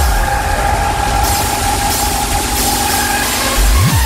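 Electronic dance music in a DJ mix at a breakdown: the kick drum drops out, leaving a held synth tone under a hissing noise sweep that brightens about a second in. The kick drum comes back shortly before the end.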